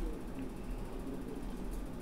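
Computer mouse scroll wheel clicking through its notches as a page is scrolled, over a steady low hum.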